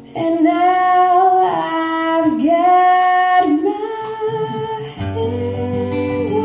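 A woman singing a song live with acoustic guitar accompaniment: the voice comes in strongly right at the start, holding long notes with slides between them, and the guitar strumming picks up again about five seconds in.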